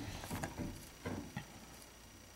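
Faint, scattered small clicks and scratches of a screwdriver turning a motherboard screw, a handful of ticks in the first second and a half.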